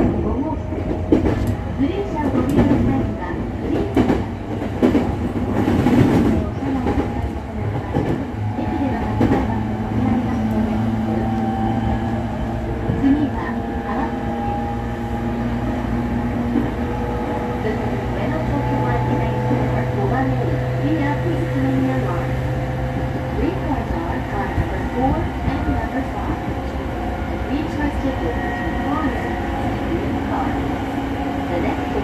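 Cabin noise inside a JR East E231 series electric commuter train under way: steady rumble of wheels on rail, with clattering and rattling over the first several seconds. A steady hum runs under it and stops about 24 seconds in.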